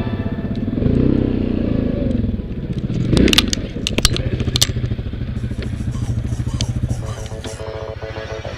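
Yamaha Grizzly ATV's single-cylinder engine running at low revs, rising briefly about a second in. About three to four and a half seconds in come several sharp knocks and clatters as the quad tips over.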